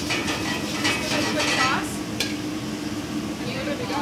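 Thick garlic-chili sauce sizzling in a hot pan as it is stirred, a utensil scraping and clinking against the pan, with one sharp clink about two seconds in.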